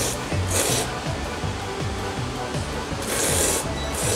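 A person slurping ramen noodles: two long, hissing slurps, one about half a second in and one about three seconds in. Background music with a steady beat runs underneath.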